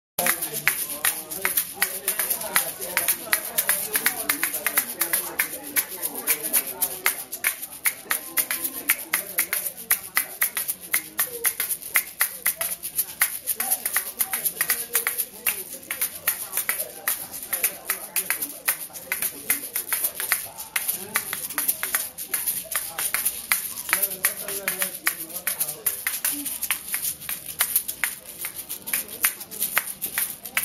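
A pair of aslatua (asalato), pebble-filled Ghanaian gourd shakers, swung and knocked together in both hands: a fast, unbroken rhythm of sharp clicks over sandy rattling. A man's voice runs underneath.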